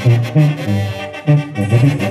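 A live banda brass band plays: a sousaphone bass line steps between low notes about three times a second under sustained horns.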